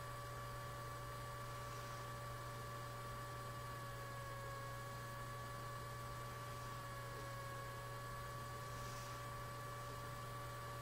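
Faint steady electrical hum with a thin, slightly wavering high whine over a constant hiss: noise from the recording setup, with no other sound.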